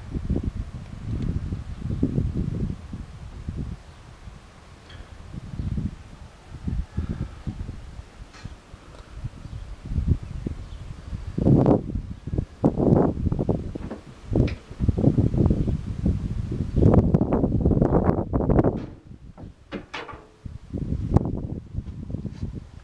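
Wind buffeting the camera microphone in irregular low rumbling gusts, strongest for several seconds past the middle.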